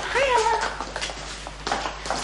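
A woman's high, wavering vocal cry, about half a second long near the start, rising and then dipping in pitch. Scattered knocks and rustling follow.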